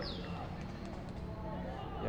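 Faint open-air football-pitch ambience with distant players' voices, between stretches of commentary.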